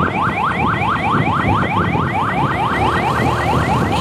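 Electronic vehicle siren in a rapid yelp, a rising tone repeating about five times a second, over steady low road noise.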